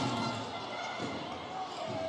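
Cycle-ball ball knocked by bicycle wheels and bouncing on a wooden indoor court: two sharp knocks about a second apart, over the ambience of a large sports hall.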